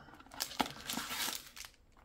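Foil booster pack wrappers crinkling against a cardboard box as collector booster packs are pulled out of it, with a few soft clicks about half a second in and a longer crinkle around a second in.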